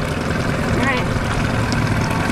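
Outboard motor running steadily at trolling speed, a constant low hum under wind and water noise, with a brief faint voice about a second in.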